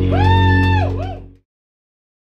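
Live keyboard music: a sustained chord over a strong bass note, with a high held note that slides up, holds and slides back down. The music fades and cuts off about a second and a half in.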